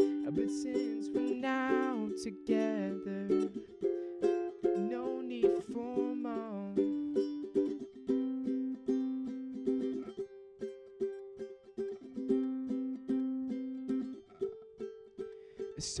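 Ukulele strummed in a steady chord rhythm. A voice sings along in the first half, then the ukulele plays alone.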